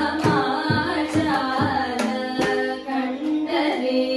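Women's voices singing a Kannada Dasa devotional song (devaranama) in Carnatic style, with gliding, ornamented lines over a steady drone. A mridangam accompanies with sharp strokes at uneven intervals.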